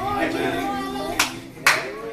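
Two sharp hand claps about half a second apart, a little over a second in, following a voice singing or speaking.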